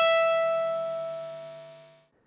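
A single tapped note on a Stratocaster-style electric guitar's high E string at the 12th fret (E5), hammered on with a right-hand finger and held. It rings and fades steadily, dying away near the end.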